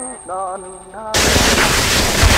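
Experimental noise music: a voice sings a few short, wavering syllables, then about a second in an abrupt blast of harsh, dense noise cuts in and stays loud.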